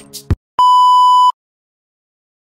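A single steady electronic bleep, about three-quarters of a second long and cut off sharply, of the kind used as a censor tone, coming just after background music stops abruptly.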